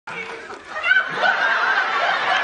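Studio audience laughing, swelling louder about a second in and carrying on steadily.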